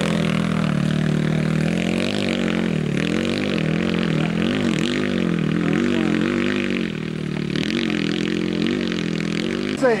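Enduro dirt bike engine revving up and down under load on a muddy uphill climb, its pitch rising and dipping every second or so as the throttle is worked.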